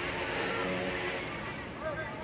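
A motor vehicle's engine running steadily for about the first second, over the continuous sound of distant voices calling out around a football pitch.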